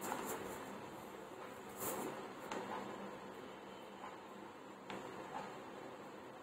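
Faint handling of a paper notebook and a pen writing on it, over a quiet room hiss: a brief soft rustle about two seconds in and a few light ticks later.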